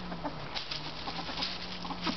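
Ferrets dooking while they play: soft, quick, faint clucking sounds, with light scuffling.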